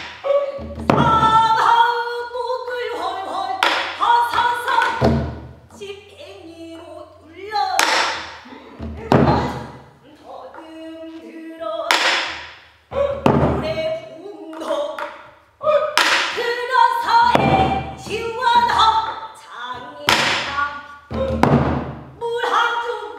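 A woman singing pansori, her voice sliding and holding on long notes, accompanied by a buk barrel drum. The drum strikes sharply every few seconds, often two strokes close together.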